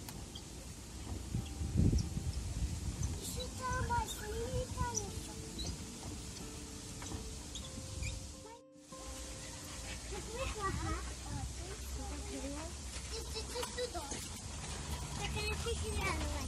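Wind rumbling on the microphone, loudest in a gust about two seconds in, with voices in the background. The sound breaks off briefly about halfway through.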